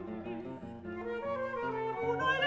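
Flute and classical guitar playing an instrumental passage without voice, the flute moving in short stepwise notes over plucked guitar.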